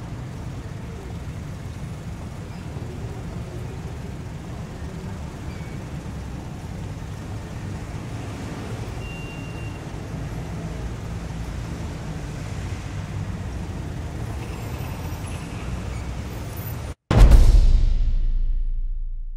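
A steady low background rumble with no clear strokes or rhythm. About a second before the end it cuts out, and a sudden loud low hit comes in and slowly fades, as the picture changes to a title card.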